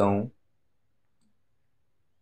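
A spoken word ends just after the start, then near silence with a few faint computer-mouse clicks.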